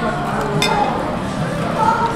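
Restaurant dining-room ambience: background voices with a single sharp clink of tableware a little over half a second in.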